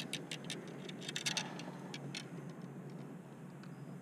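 A run of irregular light clicks and rustles while a freshly landed catfish is handled on the bank. The clicks stop a little past halfway, leaving only faint background hiss.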